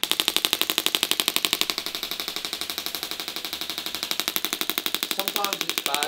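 Radial shockwave therapy device firing its applicator against the thigh: a rapid, even train of sharp clicks that starts suddenly.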